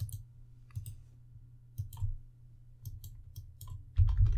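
Scattered clicks of a computer mouse and keyboard keys, a few at a time with pauses between, over a faint low steady hum.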